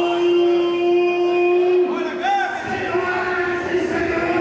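A voice holding one long, drawn-out note for about two seconds, then sliding in pitch and breaking into shorter sounds, echoing in a large arena hall with crowd noise behind it.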